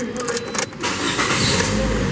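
A few clicks as the key turns in the ignition, then a 2013 Toyota Corolla's four-cylinder engine cranks and starts in the second half, settling into a steady run.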